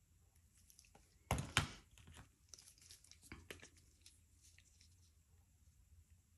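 Plastic paint squeeze bottles being handled and swapped with gloved hands: two sharp knocks about a second in, then scattered crinkly crackles for a few seconds.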